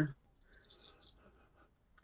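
Mostly quiet, with a few faint, short sniffs in the first second as a scented candle is smelled.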